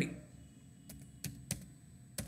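Faint typing on a computer keyboard: a few separate keystrokes, unevenly spaced, in the second half.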